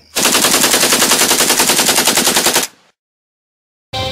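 A rapid rattling burst of bangs, about ten a second, like automatic gunfire, lasting about two and a half seconds and stopping sharply. Music comes in near the end.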